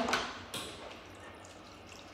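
Quiet washroom room tone with one short, faint tap about half a second in; the hand dryer is not yet running.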